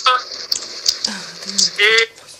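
A man speaking over a phone video call, heard through the phone's speaker, with a pause and a drawn-out hesitation sound in the middle.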